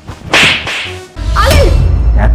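A hard slap across the face: one loud, sharp, whip-like crack about a third of a second in. A deep low boom enters just after a second in and carries on.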